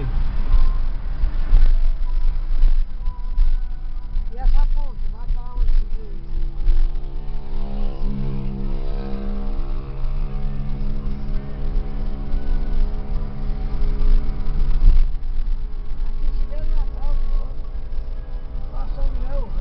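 A car driving, heard from inside the cabin: a continuous low rumble of road and engine noise, with a steady humming tone for several seconds in the middle.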